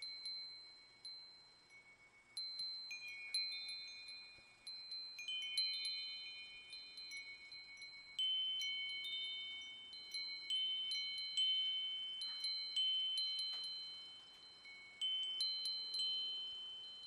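Wind chimes ringing: several high notes struck at irregular moments, overlapping and each ringing out and fading. The strikes are sparse for the first couple of seconds, then come more often.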